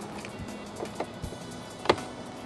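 Soft background music, with a few light clicks and one sharper click near the end as a cable is pressed in behind a car's plastic pillar trim and rubber door seal.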